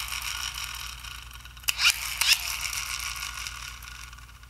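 WWII-era squeeze-lever dynamo flashlight's gear train and small generator whirring as they spin down after a press of the lever, fading as the incandescent bulb dims, with a couple of clicks near the middle.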